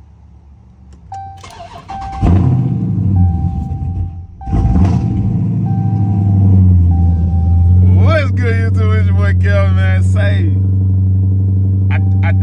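Cold start of a Dodge Challenger Scat Pack's 6.4-litre HEMI V8 by push button: a warning chime beeps, the engine cranks and fires loudly about two seconds in, falters for a moment about four seconds in, then catches again and settles into a deep steady idle. The stumble is unexpected even to the owner, who puts it down to a really cold start.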